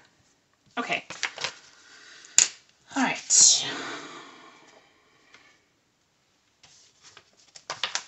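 Paper sticker sheets being handled and flipped on a desk: several short rustles, a sharp click about two and a half seconds in, and a longer swishing slide just after three seconds, then more brief rustles near the end.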